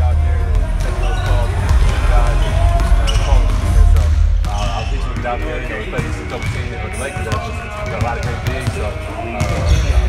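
Basketballs bouncing on a hard gym floor, repeated thuds under a man's voice answering questions close to the microphone.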